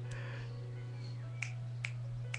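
Two sharp clicks in the second half, over a steady low electrical hum.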